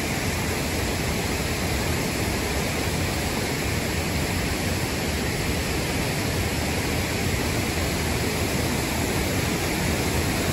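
Steady rush of water from a dam spillway cascade pouring over rock into the river below.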